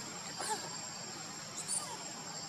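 Baby macaque giving two brief high-pitched squeaks, about half a second in and again near the end.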